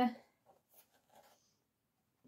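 The last word of speech, then faint scratchy rustling as a stiff sheet of white card and small stuffed fabric cushions are handled, dying away about a second and a half in.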